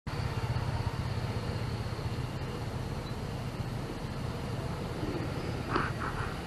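Motor scooter riding in city traffic: a steady low engine and road rumble, with a brief higher-pitched sound near the end.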